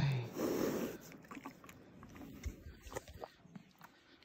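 A mustang breathes out through its nostrils right at the microphone, one short breath about half a second in, followed by faint small clicks.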